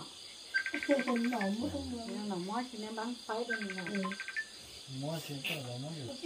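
People talking over a background of night insects: two short, rapid trills of high chirps, one about half a second in and one near the middle, over a faint steady high insect drone.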